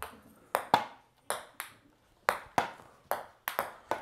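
A ping pong ball rally on a hardwood floor: a run of about a dozen sharp ticks as the ball bounces on the floor and is struck by the paddles, coming faster near the end.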